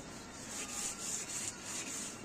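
One-inch iron chisel rubbed back and forth on a sharpening stone, making a quick, even rhythm of gritty scraping hiss strokes as the edge is honed.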